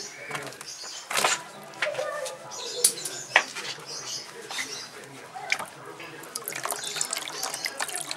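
Water splashing and dripping in a plastic bucket as a wet guinea pig is moved about in it and lifted out, with many sharp clicks and knocks scattered throughout.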